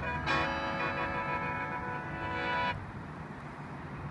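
Khaen, the Lao bamboo free-reed mouth organ, playing a sustained many-note chord in the sootsanaen mode; it breaks off for a moment near the start, resumes, and stops about two and a half seconds in. After that only a steady low background hum remains.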